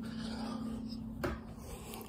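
Handling noise from a handheld phone being moved about, with a single short click a little past the middle, over a steady low hum.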